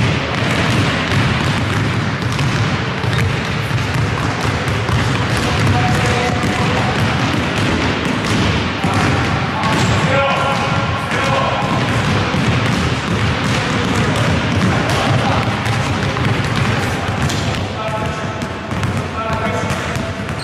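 Several basketballs dribbled at once on a hardwood gym floor, a dense overlapping patter of bounces echoing in the hall, with voices in the background.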